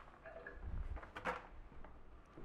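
Faint stirring of wet chopped collard greens and onions in a stainless steel skillet with a wooden spoon, with a few soft scrapes and a low bump a little after half a second in.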